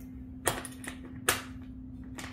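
Sharp metal clicks from a boat's transom wheel bracket and its locking pin being handled: two distinct clicks under a second apart, with a fainter one between.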